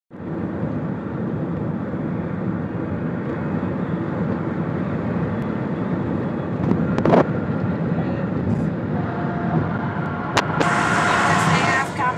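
Steady road and engine noise heard inside a car's cabin while driving at highway speed, with a sharp knock about seven seconds in.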